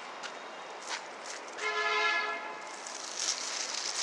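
A horn sounds once, a steady pitched tone lasting under a second, about a second and a half in, over outdoor background noise.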